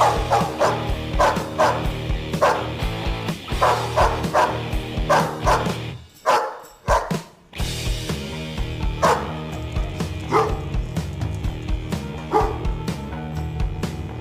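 A dog barking repeatedly over background music: quick barks about two a second at first, then after a short break a few single barks a second or two apart.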